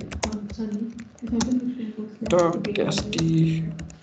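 Typing on a computer keyboard: an uneven run of key clicks as a command is keyed in.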